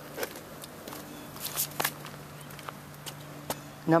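Footsteps on a grated floor: a few scattered, irregular clicks over a faint steady low hum.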